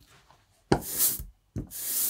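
An ink brayer rolled through a thin film of relief printing ink on an inking slab: two strokes about a second apart, each a sharp touch-down followed by a tacky hiss.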